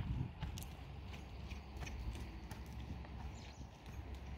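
Faint, irregular hoofbeats of a horse trotting on sand as it circles on a lunge line, over a low steady rumble.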